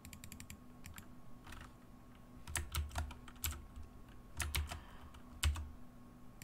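Computer keyboard keystrokes in irregular bursts: a quick run of light taps at the start, then heavier, more spaced keystrokes through the middle and end, the loudest a single key strike near the end.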